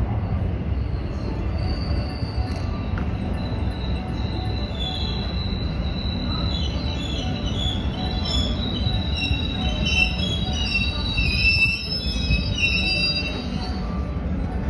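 JR West 221 series electric train pulling into the platform and braking: a steady low rumble under high-pitched brake and wheel squeals that begin about a second and a half in and grow more frequent and louder toward the end as the train slows.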